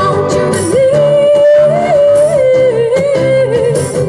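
Live band with strummed acoustic guitars and a steady bass line, a female vocalist holding one long, wavering wordless note from about a second in to near the end.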